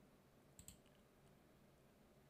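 Near silence with two faint, quick computer mouse clicks a little over half a second in.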